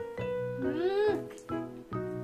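Light background music of plucked notes with a steady beat. About halfway through comes a short meow-like call that rises and then falls in pitch, louder than the music.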